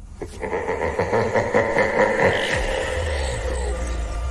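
Horror-show transition sound effect: a harsh, grating sound that starts suddenly just after the beginning, with a low rumble joining about halfway through.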